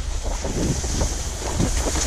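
Wind rumbling on the microphone of a camera moving down a ski slope, over the hiss and scrape of a snowboard sliding on packed snow.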